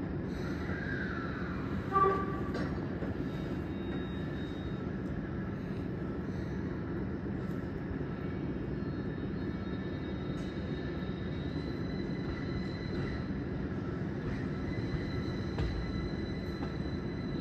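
Steady low rumble of a Tokyo Metro 16000 series electric train moving through the depot yard. A short, loud, pitched sound comes about two seconds in, and a faint thin high tone, like wheel squeal on the yard curves, runs through the second half.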